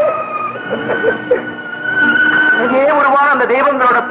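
Film soundtrack: a high, steady note held for a couple of seconds, with a man's voice wavering over it in the second half.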